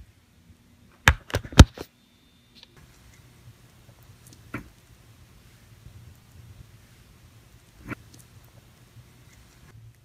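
Plastic rice paddle chopping and mixing cooked rice in a rice cooker's inner pot: three or four sharp knocks in quick succession about a second in, then faint soft taps and scrapes.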